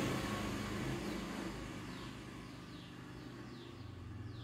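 Background noise of a passing vehicle fading away, over a low steady hum. From about two seconds in, faint short bird chirps, each falling in pitch, come about two a second.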